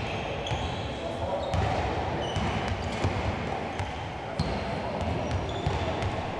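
Basketballs bouncing and thudding on a hardwood gym court during a team warm-up, a knock every second or so, with short high squeaks of sneakers and indistinct voices echoing in the large hall.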